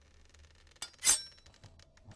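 A light click, then about a third of a second later a louder, bright clink like glass, over a faint low hum.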